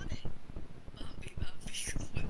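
Speech, partly whispered.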